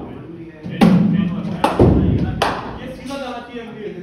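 Three sharp knocks of cricket ball impacts in an indoor net hall, a little under a second apart, the middle one with a deep thud, ringing in the large room. Voices run underneath.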